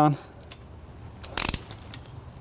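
Quarter-inch torque wrench tightening camshaft cap bolts: a few light ratchet clicks, then one sharp click about a second and a half in, the kind a click-type torque wrench gives when the bolt reaches its set torque.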